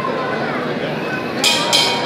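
Boxing ring bell struck twice in quick succession near the end, ringing brightly over crowd chatter, the signal that the round is starting.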